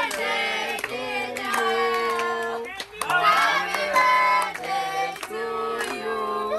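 A group of people singing a birthday song together to a cake with a lit sparkler candle, with hand clapping, some notes held for about a second.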